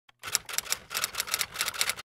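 Typewriter keystroke sound effect: a quick run of key clacks, about six a second, timed to text typing itself out on screen.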